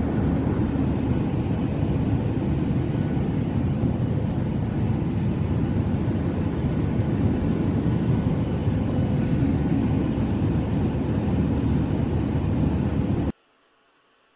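Airliner cabin noise: a steady, loud, low rumble of engines and airflow heard from a passenger seat. It cuts off suddenly near the end, leaving only a faint hiss.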